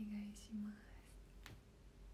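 A woman's soft, half-whispered voice: two short murmured sounds at the start, then a single faint click about a second and a half in.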